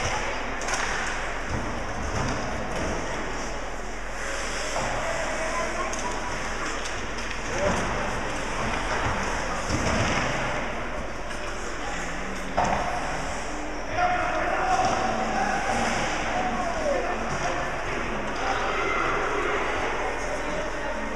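Ice hockey game sounding through an echoing rink: indistinct spectators' voices and shouts, with a few sharp knocks of sticks, puck and boards.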